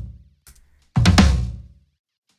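A 16-inch 1960s Camco Oaklawn floor tom, recorded and played back through a gate and saturation, struck once about a second in with a deep boom that dies away over about a second. The tail of the previous hit fades out at the start.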